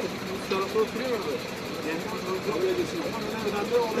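Indistinct voices talking over a steady background hum.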